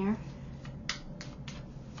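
Tarot cards being shuffled by hand: a string of irregular short snaps and taps.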